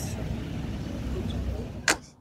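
Café background noise: a steady low rumble with a faint haze of room sound, ending in one sharp click just before the end.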